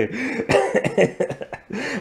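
A person laughing in short, breathy repeated bursts.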